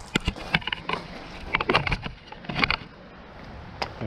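Pressure-treated wooden boards knocking and clattering against each other as they are set down and pushed together, with several sharp knocks spread across a few seconds.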